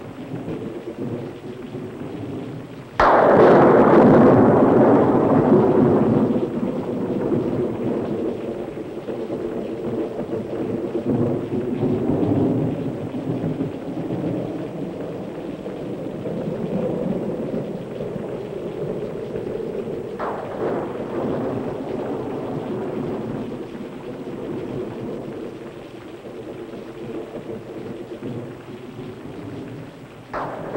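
Thunderstorm sound: a sudden loud crash of thunder about three seconds in that rolls away over several seconds, then steady rain-like rushing with a low drone of held tones beneath, and a second, softer crash about twenty seconds in.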